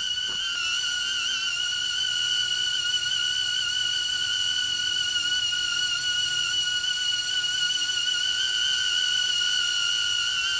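HoverAir X1 mini drone hovering, its propellers giving a loud, steady high-pitched whine with a stack of overtones, reading around 87 decibels on a sound meter.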